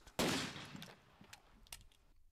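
A single gunshot about a fifth of a second in, its echo fading away over about a second, followed by a few faint clicks.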